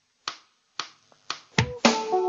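The start of a Romani band's song: three sharp clicks about half a second apart count in the tune, then the band comes in loudly near the end.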